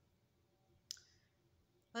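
Near silence with quiet room tone, broken by a single sharp click about a second in. A voice starts just at the end.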